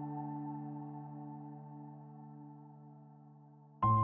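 Slow instrumental piano music: a held chord fades away slowly, then a new chord is struck loudly just before the end.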